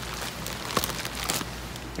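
Water sloshing and dripping in a clear plastic fish-shipping bag as it is handled, with a few light clicks.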